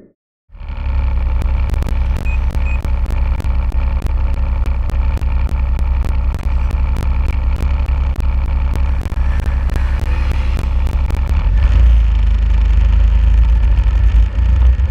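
Snowmobile engine running steadily while riding along a snow trail, heard from the machine itself, with frequent short clicks throughout. The low rumble grows heavier near the end.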